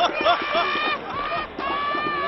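A high-pitched voice drawing out long, steady notes: one near the start lasting about half a second, and a second one starting about one and a half seconds in.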